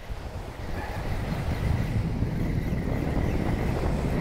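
Wind buffeting the microphone over small surf washing on the beach, a low noise that builds up steadily.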